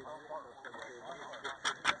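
People talking, followed by two sharp clicks near the end.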